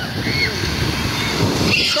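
Ocean surf breaking and washing through the shallows, with wind rumbling on the microphone.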